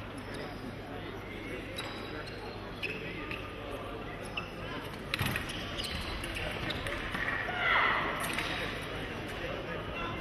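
Foil fencers' footwork, with scattered thumps and stamps of feet on the piste, echoing in a large hall over a murmur of voices. There is a sharp knock about five seconds in and a short louder sound near the end.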